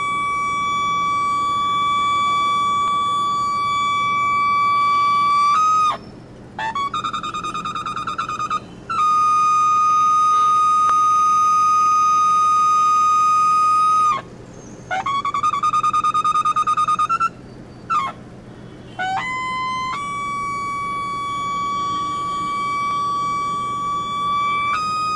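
A long curved ceremonial horn blown in a series of loud, single-pitched blasts. Some are held steady for several seconds and others waver rapidly, with short breaks for breath between them.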